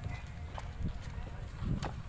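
Unfired clay bricks knocking against each other as they are set by hand into a kiln chamber, with a few sharp clacks, over a low rumble.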